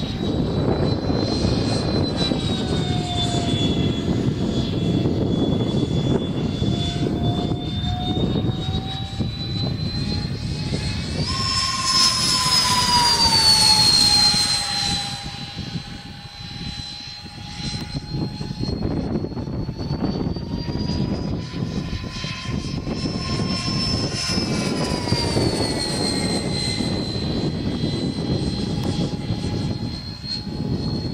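Freewing Messerschmitt Me 262 RC jet's twin electric ducted fans whining in flight, the pitch wandering up and down with throttle and passes. The whine is loudest about 12 seconds in, then drops in pitch as the model goes by.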